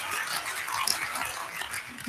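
Audience applause dying away, the clapping growing steadily fainter.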